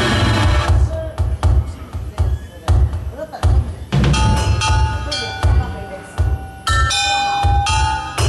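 Live progressive-rock improvisation: a two-drummer kit keeps a low kick-drum pulse about twice a second with sharp drum hits. About four seconds in, sustained bell-like tones at several pitches join it.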